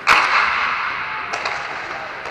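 Sharp crack of an inline hockey puck being hit or slamming into the rink boards, ringing out in the dome's echo and fading over about a second. A few lighter clicks of sticks or puck follow later on.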